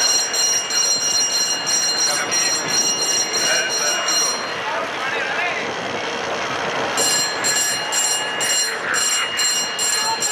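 A bell rung rapidly, about three strokes a second, in two spells separated by a pause of a couple of seconds, over steady crowd noise. It is the track-cycling bell for the last lap, rung as each pursuit rider nears the finish.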